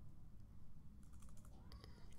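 Faint computer keyboard keystrokes, a handful of quick key taps in the second half, deleting text with the backspace key.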